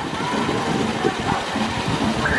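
Steady rush of a pool fountain's water curtain pouring onto the pool surface, with a low irregular rumble, and faint voices mixed in.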